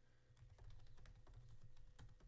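Faint typing on a computer keyboard: a quick, irregular run of soft keystroke clicks.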